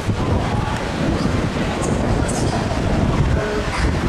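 Wind buffeting the microphone on an open ship deck: a steady, loud rumble.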